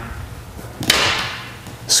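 A plate-loaded barbell set down on a rubber gym floor between deadlift repetitions: one short thud about a second in, with a hiss that fades over about half a second.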